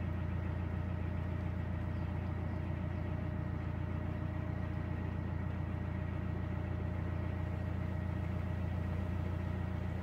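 Narrowboat's inboard diesel engine running steadily at low revs, a constant low throb with no change in speed.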